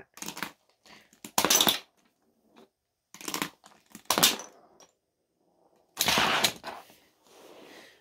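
Plastic clicks and clatters of a Beyblade spinning top and its launcher being handled and launched onto a plastic tray. There are several short separate noises, and the loudest and longest comes about six seconds in.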